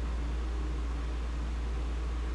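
A steady low hum with a faint even hiss under it: unchanging room background noise, with nothing else sounding.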